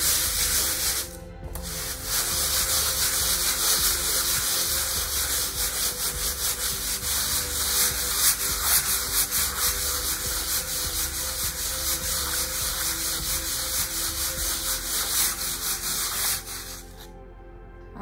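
Sandpaper on a hand sanding block scrubbed in quick circles over a wet, gesso-coated aluminum panel, a steady rasping that smooths out the rough brush texture of the gesso coats. It breaks off briefly about a second in and stops shortly before the end.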